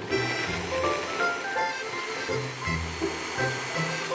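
Braun hand blender running steadily in a jug, pureeing chunks of potato, cabbage and apple with yogurt, heard under light background music with a bass line.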